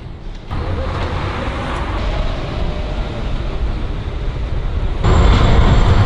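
City street traffic noise: a steady wash of passing cars and road rumble. It jumps louder in steps about half a second in and again near the end.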